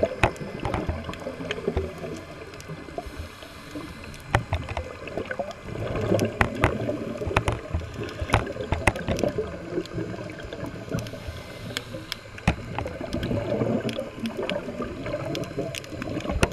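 Underwater ambience picked up by a submerged camera: a muffled, uneven low rumble of moving water with many scattered sharp clicks.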